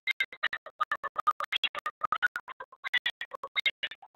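Garbled, stuttering audio from a remote participant's microphone over a webinar connection: rapid choppy fragments, several a second, breaking up so that nothing comes through clearly. This is the sign of a malfunctioning mic or connection.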